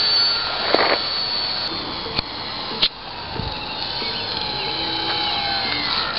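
Motor and propeller of a HobbyKing J3 Cub model plane whining in flight, the pitch sliding downward in the second half as the plane comes by low. A few brief knocks sound about a second and three seconds in.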